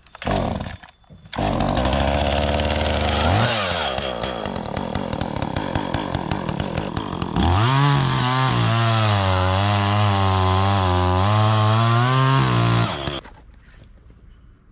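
Gas chainsaw starting, running and revving up, then cutting into a hemlock log with its engine note wavering under load, and stopping abruptly near the end.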